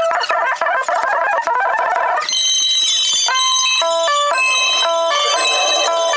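Live rock band with drums, played back many times faster than real speed. It comes out as rapid, high-pitched tones that jump from pitch to pitch every fraction of a second, over a hiss of cymbals and blurred drum hits, with no bass at all.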